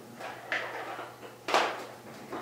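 Kitchen containers handled on a countertop: a light click about half a second in, then a louder clack about a second and a half in as something is set down.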